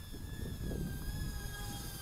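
Beta85X HD cinewhoop's brushless motors and guarded propellers whining as it flies a low pass, a thin high whine of several tones that drift slowly down in pitch.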